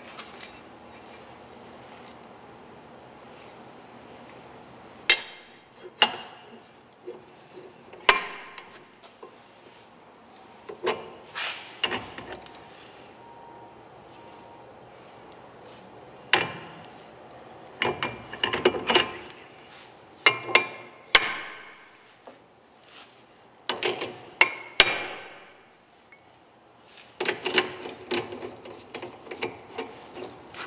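Steel cones, adapters and a brake rotor clanking and scraping as they are slid onto the arbor of a Hunter brake lathe. A dozen or so sharp metal knocks and clinks come scattered through, with short scraping runs between them.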